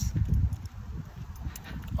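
Low, uneven rumble with soft irregular knocks on a handheld phone's microphone while walking: wind on the microphone and footsteps.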